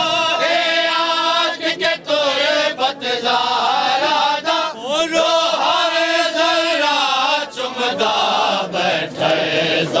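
Men chanting a Punjabi noha, a Shia lament, in long drawn-out notes with short breaks for breath.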